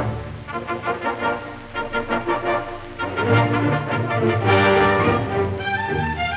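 Orchestral film score. Quick repeated notes run through the first half, then louder held chords come in about halfway through.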